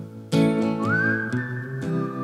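Acoustic guitar strummed, with a whistled melody over it: a fresh strum about a third of a second in, then a whistled note sliding up and held.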